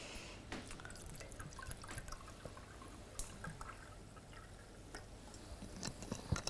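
Quiet room tone dotted with scattered light clicks and taps, each brief, like small handling noises.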